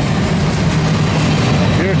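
Intermodal freight train's well cars rolling past at speed: a steady rumble of steel wheels on rail.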